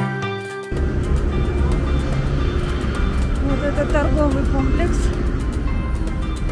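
Background music cuts off suddenly under a second in, giving way to steady city street noise: passing traffic with a low rumble, and passers-by talking.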